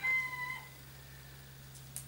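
A single long, high-pitched animal call, slightly falling in pitch, ending about half a second in. A low steady hum runs underneath.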